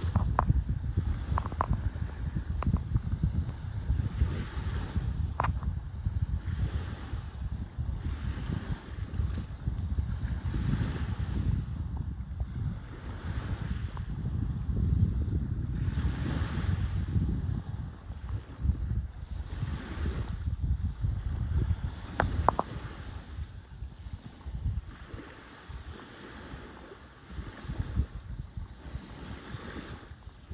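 Wind buffeting the microphone in uneven gusts, over a wash of sea that swells and fades every few seconds, with a few brief high chirps.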